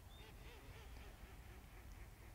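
Near silence: faint outdoor background with a few faint, wavering calls, most likely distant birds, in the first second or so.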